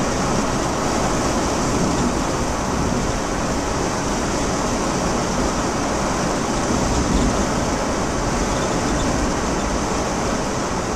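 Volkswagen T4 camper van driving at road speed: a steady mix of engine and tyre noise heard from inside the cab.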